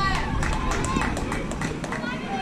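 Voices of players and spectators calling out around a youth baseball field, with a quick run of sharp taps, about six or seven a second, for most of the two seconds.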